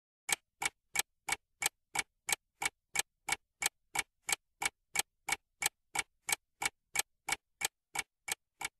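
Clock-tick sound effect keeping time for a countdown timer: short, evenly spaced ticks, about three a second, at a steady level.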